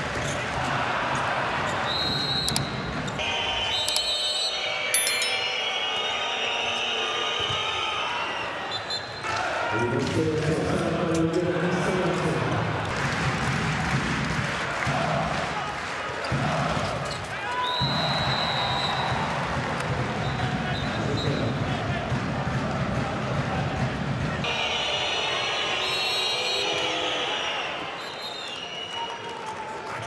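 Handball bouncing and slapping on an indoor court floor, with shoes squeaking in short high chirps several times, over the steady din of an arena crowd.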